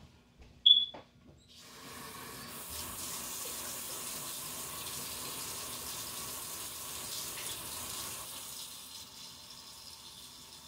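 A short sharp clink, then a faucet turned on about a second and a half in, water running steadily into a sink while hands are washed under it; the flow sounds a little weaker near the end.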